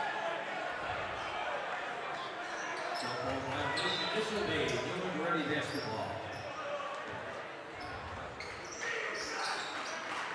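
Basketball dribbled on a hardwood gym floor, under a steady din of crowd chatter and shouting in a large, echoing gym.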